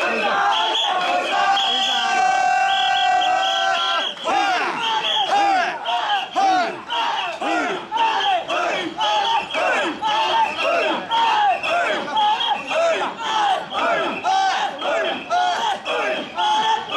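Crowd of mikoshi bearers shouting a rhythmic chant in chorus, about one and a half shouts a second, opening with a long drawn-out held call for the first few seconds.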